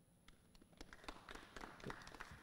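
Faint, scattered applause: irregular hand claps that start about half a second in and grow thicker.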